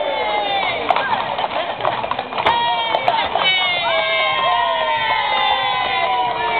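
A group of voices singing a song together, holding some long notes, most clearly in the second half.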